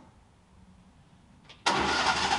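Near silence, then about a second and a half in the Wood-Mizer LT35 portable sawmill's engine comes in abruptly and runs loud and steady with a fast, even firing pulse.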